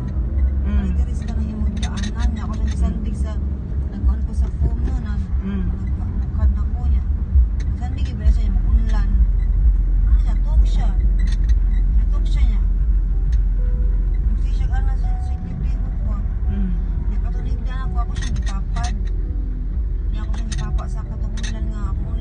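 Low, steady rumble of a car's engine and road noise heard inside the cabin while driving, growing heavier about a third of the way in, with voices talking over it.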